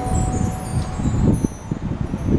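Percussion chimes ringing in a descending run of high, shimmering notes that fade over about a second, with a sustained final chord fading out beneath. Low rumbling and knocking run underneath.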